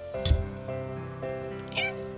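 A cat gives one short, high meow near the end, over soft background music. A dull thump comes about a quarter of a second in.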